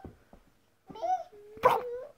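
A toddler's short vocal sounds: a brief pitched call about a second in, then a louder, noisier squeal about half a second later.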